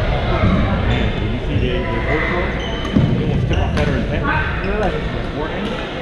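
Badminton play in a large, echoing gym: racket strikes on the shuttlecock, with sharp hits about three seconds in and again near four seconds, and short squeaks of sneakers on the court floor. Background chatter from players across the hall runs throughout.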